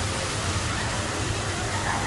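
Steady rushing noise with a low rumble underneath, and faint voices near the end.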